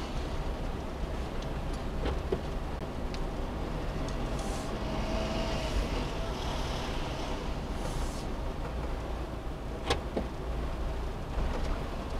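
Suzuki Every kei van rolling slowly at low speed, a steady low engine and tyre rumble heard from inside the cabin, with a few faint clicks.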